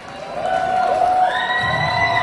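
Concert crowd cheering, with long, high-pitched screams from fans over the noise; it swells about half a second in.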